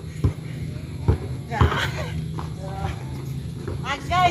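A basketball being dribbled on a grassy yard: three sharp bounces in the first two seconds, with scuffing footsteps, and a player's voice near the end.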